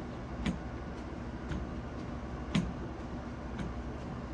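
A steady low background hum with a sharp tick about once a second, four or five ticks in all.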